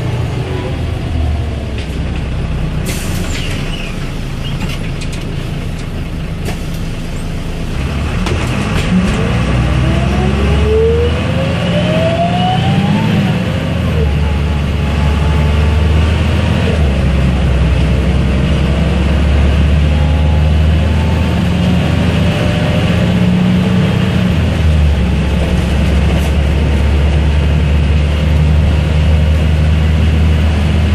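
Cabin noise aboard a moving MAN NG272 articulated city bus: a steady low diesel engine drone that grows louder about eight seconds in as the bus picks up speed, with whines rising in pitch for a few seconds.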